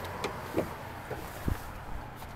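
A steady low hum with a few light knocks, the strongest a soft thump about one and a half seconds in.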